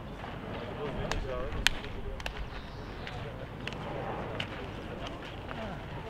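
Players' voices talking and calling across an outdoor court, with a few sharp knocks scattered through; the loudest knock comes about a second and a half in.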